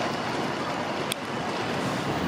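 Steady outdoor street ambience, an even wash of city background noise with some wind on the microphone, and a short click about a second in.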